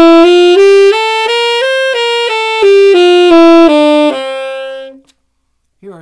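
Tenor saxophone playing the C Mixolydian mode in sequence: single notes stepping up an octave and back down, ending on a held low note that stops about a second before the end.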